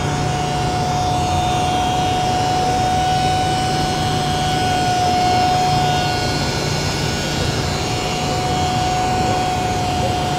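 Pneumatic 5-inch random orbital sander on a cobot arm running steadily across a cabinet door frame, smoothing the surface ready for primer: a constant high whine over a steady hiss.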